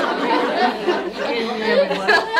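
Several people talking over one another, with laughter mixed in.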